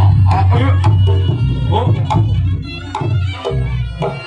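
Live traditional Indonesian percussion music: hand drums beat a quick rhythm under steady pitched tones and a wavering melody line. The drums ease off a little about three and a half seconds in.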